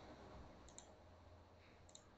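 Near silence: faint room tone with a low hum, broken by two faint short clicks, one about three quarters of a second in and one near the end.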